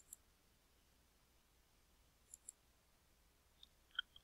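A few faint computer mouse clicks, several in quick pairs, over near silence.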